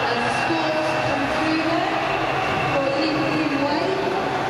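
Steady murmur of a large indoor arena's crowd, with faint distant voices mixed into it.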